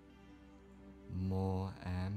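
A low-pitched voice intoning long held syllables on one steady note, like a mantra chant, starting about halfway in after a quiet first second.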